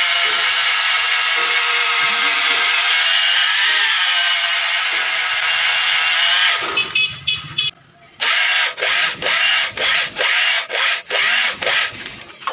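Motor-driven cylinder boring tool running in an engine block's cylinder bore: a loud steady whine for about six and a half seconds. It then stutters, drops out briefly, and comes back as short bursts, about two to three a second.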